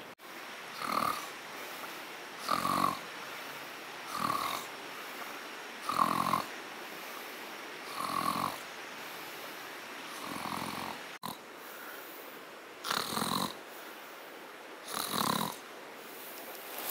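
A man snoring in his sleep: about eight snores, one every two seconds or so.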